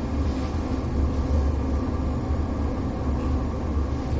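Steady low hum with an even background noise of the room, no speech.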